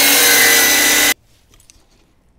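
Electric miter saw running at full speed with a steady high motor whine, cutting through a wooden framing plate. The sound stops abruptly just over a second in.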